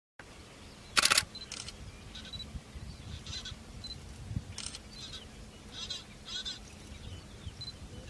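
A string of short camera shutter clicks and handling noises over a low steady rumble, with the loudest burst about a second in and a few brief high beeps between the clicks.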